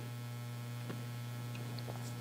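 Low, steady electrical mains hum, with a couple of faint ticks about one and two seconds in.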